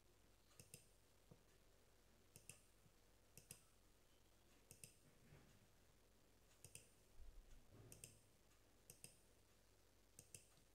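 Faint computer mouse clicks, mostly in quick pairs of press and release, every second or so, with a busier run of clicks about seven to eight seconds in, over near-silent room tone.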